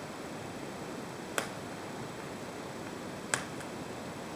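Two short, crisp snaps about two seconds apart, as a raw cauliflower head is broken apart into pieces by hand over a wooden cutting board.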